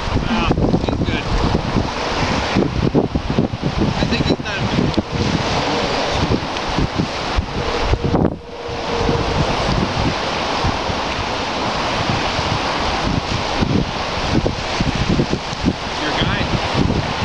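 Loud wind buffeting the microphone over the wash of lake water, dropping briefly about eight seconds in.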